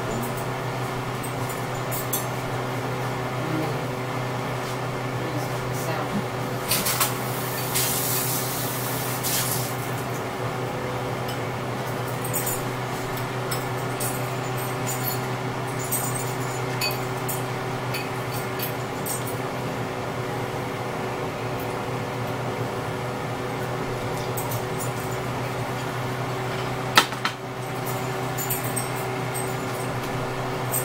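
A steady mechanical hum with several held tones, like a kitchen appliance or fan running, under light clinks of dishes and glassware. There is a brief hiss about eight seconds in and one sharp click near the end.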